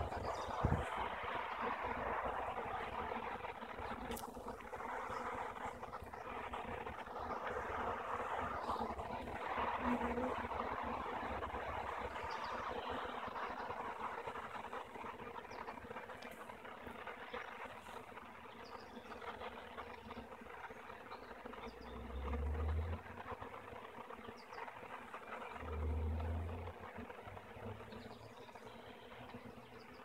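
A swarm of honey bees buzzing steadily in a cluster at a swarm trap, a dense hum of many wings that is louder in the first half. Two short low rumbles come in the second half.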